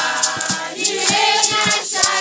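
A group of voices singing together, with hand claps and a shaker rattle keeping a quick, even beat of about four strokes a second.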